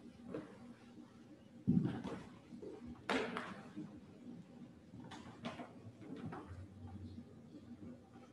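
Scattered handling knocks: a dull thump just under two seconds in, the loudest sharp knock about a second later, then lighter knocks around five seconds, over a low steady background.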